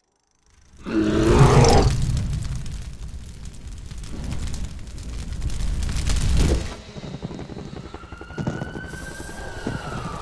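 Logo sound effects: a loud rushing rumble starts suddenly about a second in and cuts off after about six seconds. Near the end a siren wail rises and then falls.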